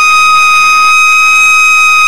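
A loud, steady, high-pitched tone held at one unchanging pitch.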